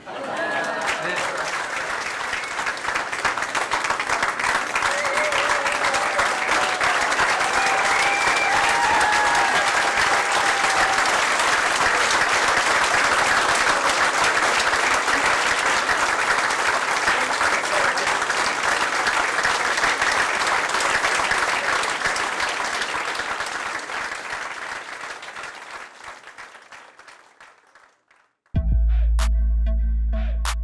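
Crowd applauding, swelling over the first few seconds, holding steady and fading out near the end, with voices calling out over it early on.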